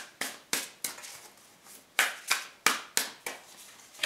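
A tarot deck being shuffled by hand, the cards slapping together in short strokes: a pair, then a pause of about a second, then a run of five at about three a second.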